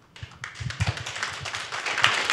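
Audience applauding, starting about half a second in and growing louder.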